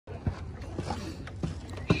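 A handful of light, sharp knocks over steady outdoor background noise, the loudest just before the end.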